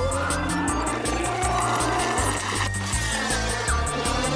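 Cartoon soundtrack music with a steady, fast ticking beat and bass. It is overlaid by whooshing jet sound effects of flying craft, with sweeping pitch in the second half.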